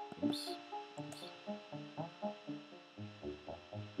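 Synth arpeggio from the Ableton Operator preset 'Brass-Brassy Analog', driven by the PolyArp MIDI arpeggiator. Short brassy notes jump up and down in pitch in quick succession.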